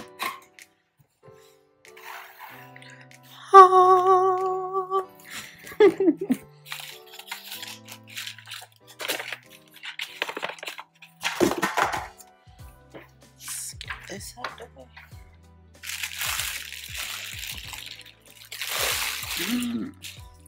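Background music with a sung line, over the handling of packaging: clicks and knocks from cardboard, and two longer spells of crinkling plastic wrap near the end as a nonstick fry pan is lifted out of its box.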